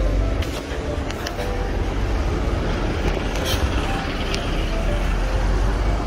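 Street traffic making a steady low rumble, with a few sharp clicks in the first second and a half and again past the middle.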